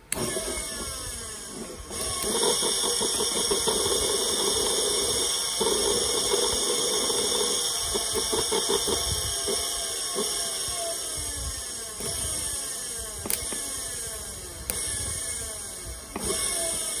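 Large German-made DC motor running free on bench power, switched on abruptly by the hand-held wires and picking up speed about two seconds in, with a steady whine and a strong high hiss. A few sharp clicks come late on.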